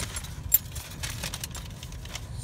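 Low steady rumble of a car heard from inside the cabin, with a few light clicks and one sharp click about half a second in.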